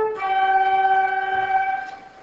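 Flutes holding a long sustained closing chord. The chord moves to a lower one just after the start and fades out near the end.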